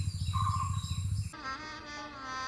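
Insects chirping and buzzing steadily, cut off abruptly about a second and a half in by music with held tones.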